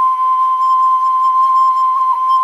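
Background flute music holding one long, steady note.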